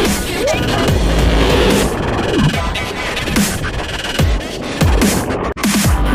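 Electronic background music with a heavy bass line and a steady beat, with repeated falling bass sweeps. It cuts out for an instant about five and a half seconds in.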